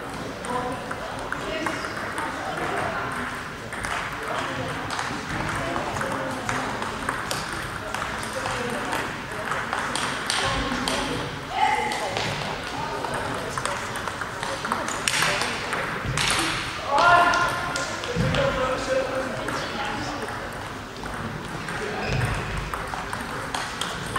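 Table tennis balls clicking off bats and tables in a sports hall, from several tables at once. Voices run through it, with a loud shout about two-thirds of the way in.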